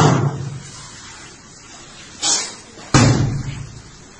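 Whole watermelons being slammed down onto a tiled floor and splitting open. A heavy thud comes at the start, a lighter one about two seconds in and another heavy one about three seconds in, each dying away over about a second.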